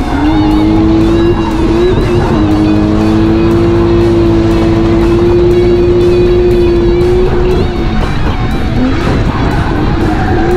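Drift car's engine heard from inside the cabin, held high in the revs for several seconds, its pitch dipping briefly near the start and again near the end. Music plays over it.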